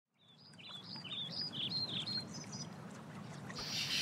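Birds chirping: a quick string of short calls sliding up and down in pitch through the first two and a half seconds. Under them runs a faint, steady low background noise.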